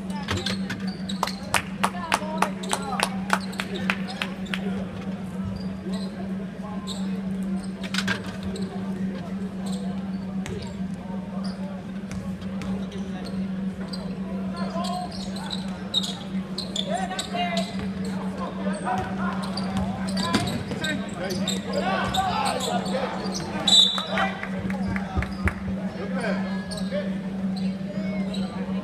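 A basketball dribbled on a hardwood gym floor, with quick bounces in the first few seconds, under distant shouts from players and spectators that echo in the hall. A steady low hum runs underneath, and a brief shrill sound near the end is the loudest moment.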